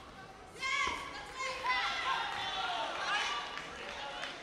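High-pitched voices calling and shouting across a large, echoing sports hall, with a single thump about a second in.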